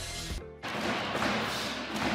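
A short musical sting from a sports broadcast's logo transition, ending about half a second in, followed by the steady noise of a large arena crowd.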